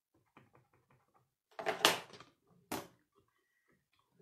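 Light plastic tapping as an ink pad is dabbed onto a clear photopolymer stamp, then two louder plastic clacks about a second apart from the hinged clear plate of a Stamparatus stamp positioner.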